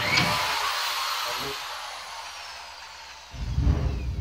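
A power drill driving a screw to fasten a wall panel to the framing. It starts with a sudden burst of motor noise that fades over about three seconds, with a falling whine. Near the end a lower, uneven run of the drill comes in.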